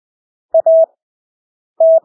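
Morse code (CW) practice tone keyed at 20 words per minute with Farnsworth-stretched spacing: a dot and a dash about half a second in, a long silent gap between characters, then the next character's dash starting near the end.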